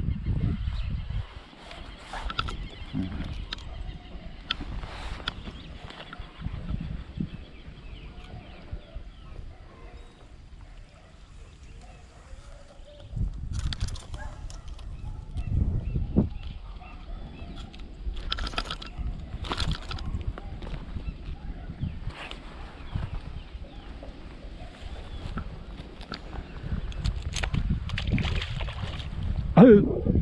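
Wind buffeting the microphone as a low, steady rumble, broken by a few sharp knocks and rustles from handling and footsteps in the grass.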